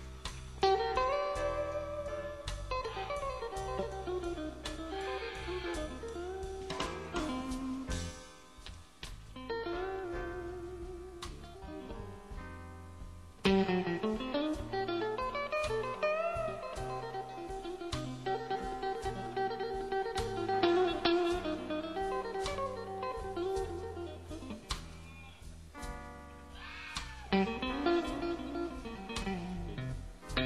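Electric blues band playing live: a lead electric guitar solos with sustained, bending notes over bass and drums.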